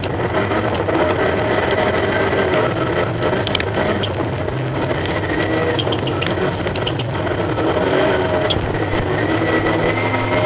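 Rallycross supercar engine running hard under race load, heard from a camera mounted on the car, its pitch shifting as it accelerates and shifts. Scattered sharp clicks and knocks come through over the engine.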